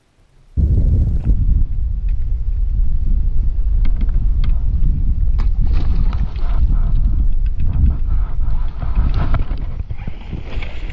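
Wind buffeting an action camera's microphone, a loud low rumble that starts abruptly about half a second in, with scattered sharp clicks and taps over it.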